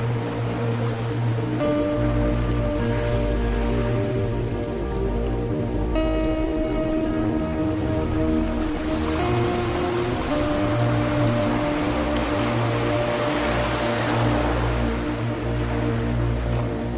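Ambient music of slow, sustained chords that shift every few seconds, over a layer of sea surf sound that swells in the second half.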